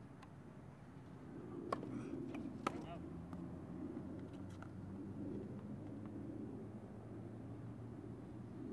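Tennis ball struck by racket strings twice, about a second apart: two sharp pocks, the second with a short ring. Fainter taps follow over a low murmur of voices.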